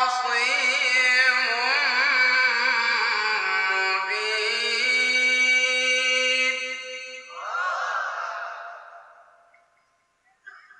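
A male qari chanting Quran recitation in long, ornamented held notes that waver in pitch, amplified through microphones. The phrase ends about seven seconds in, followed by a softer wavering stretch that fades out a couple of seconds before the end.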